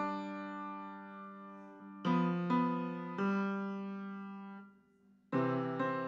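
Piano played slowly by a young student: chords struck and left to ring and fade, a few seconds apart, with a brief near-silent break about five seconds in before the playing resumes.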